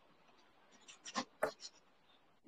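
A few short, faint scratchy rustles and clicks, like handling noise on a voice-call participant's microphone, coming about a second in.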